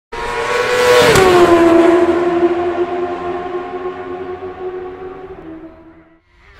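A high-revving engine speeds past. Its pitch drops sharply with a brief whoosh as it passes about a second in, then it holds a steady note and fades away.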